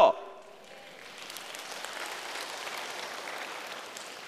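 Congregation applauding, the clapping swelling about a second in and then holding steady.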